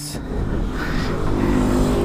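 A motor vehicle's engine growing steadily louder, its note rising in the second half.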